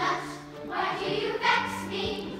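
Large school choir of young boys and girls singing together.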